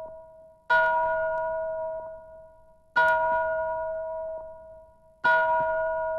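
Song intro: a bell-like chime struck three times, about every two and a quarter seconds, each stroke ringing and fading away before the next.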